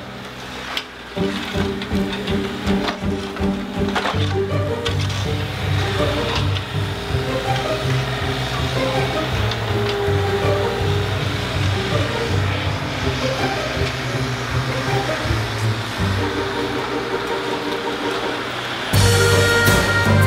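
Background music with steady held low notes, and scattered short knocks beneath it. The music grows louder about a second before the end.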